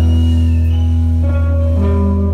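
Live rock band playing through a festival PA, heard from the crowd: electric guitar chords ringing over a heavy bass, with no singing. The chord changes about two-thirds of the way through.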